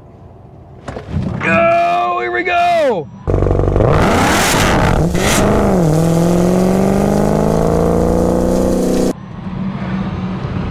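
A loud pitched whine about a second in, then the Dodge Demon 170's supercharged 6.2-litre V8 at full throttle down the strip. It is noisy and ragged at first, as the tyres spin off the line, then its pitch dips at a gear change and climbs steadily. It cuts off near the end, leaving steady road and wind noise in the Tesla cabin.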